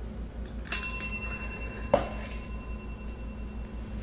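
Chrome desk service bell struck once by a cat's paw about a second in: a single bright ding that rings on and fades over a couple of seconds. A short soft knock follows about a second later.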